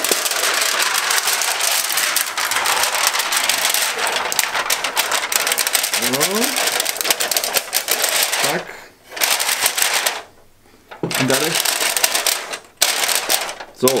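Thin titanium-sheet stove windscreen crinkling and rattling loudly as it is handled and wrapped around a camping kettle and stove. The noise breaks off in short quiet gaps in the second half.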